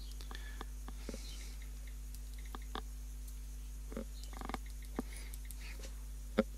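A few faint, scattered mouse clicks, typing letters one at a time on an on-screen iPad keyboard, over a steady low hum.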